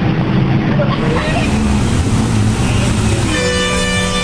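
Motor traffic on a flooded road: motorbike engines and a general street rumble, with a vehicle horn sounding for a second or so near the end.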